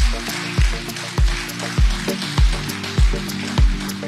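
Electronic outro music: a steady kick drum beating about every 0.6 seconds under sustained synth chords and a bright, hissy wash.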